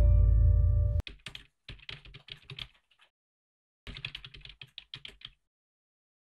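Background music ending on a held low note that cuts off abruptly about a second in, followed by two bursts of rapid computer-keyboard typing clicks, each roughly a second and a half long, with a short pause between them.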